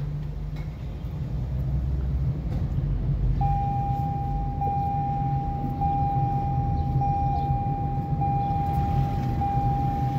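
Car driving along a city street, a steady low road-and-engine rumble. From about three and a half seconds in, a steady high-pitched tone joins it and holds to the end.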